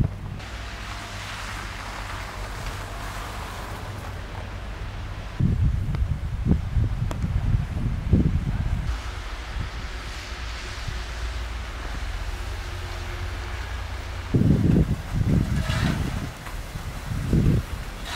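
Wind buffeting the microphone over a steady low outdoor rumble, in two spells of strong gusts: one about five seconds in and one near the end.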